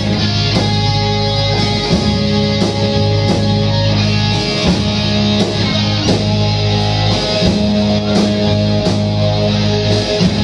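Live rock band playing: electric guitars, bass and drums, with loud low chords that shift every few seconds.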